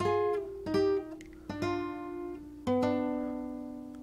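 Capoed nylon-string classical guitar playing paired notes in thirds on the upper strings: four plucked double-stops stepping downward in pitch, the last left to ring and fade.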